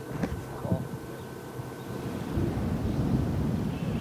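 Wind buffeting an outdoor microphone: a low rumble that swells about halfway through, with a few faint voice-like sounds in the first second.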